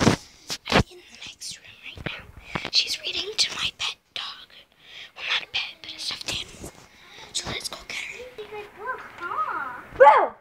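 Whispering voices, with a few sharp knocks of the phone being handled in the first second and a louder child's voice near the end.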